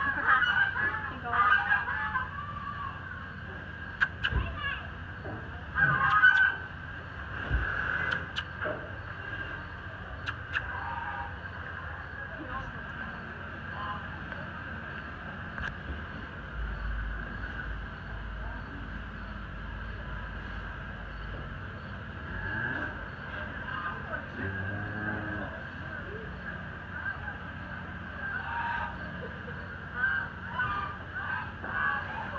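Geese honking now and then in a show barn, over a steady background hum and faint distant voices.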